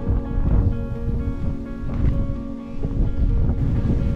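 Background music with sustained chords and a steady beat.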